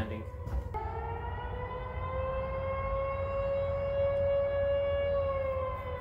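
Outdoor tornado warning siren sounding one long wail that starts suddenly about a second in, rises slowly in pitch, holds, and eases down near the end, over a low rumble. It is a tornado warning.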